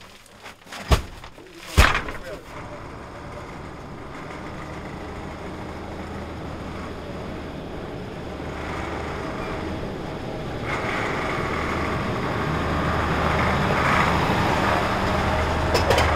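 Two heavy thuds of grain sacks dropped onto a truck bed. Then a large cargo truck's diesel engine runs as the truck drives past, its noise growing steadily louder to the end.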